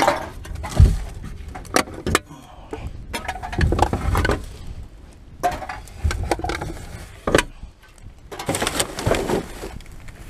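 Plastic rubbish bags rustling and crinkling as gloved hands pull and shift them, with a run of sharp knocks and thumps from the bags and the plastic wheelie bin. The heaviest thump comes about a second in.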